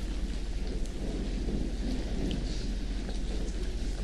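Room tone: a steady low hum and hiss from the courtroom microphone feed, with no distinct sound event.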